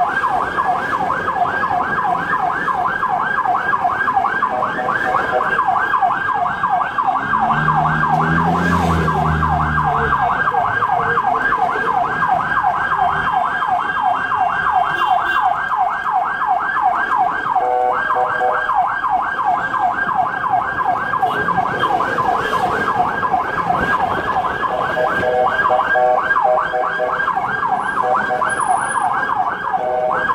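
Ambulance siren in a fast yelp, quick rising-and-falling sweeps several times a second, heard from inside the cab. It breaks off briefly a little past halfway, then carries on.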